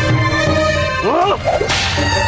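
Whip lash on a man tied to a tree: a short cry of pain a little after a second in, then one sharp whip crack near the end, over dramatic background music.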